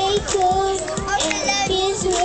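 A young girl singing a pop melody into a microphone, holding and bending notes, over a backing track with a steady drum beat.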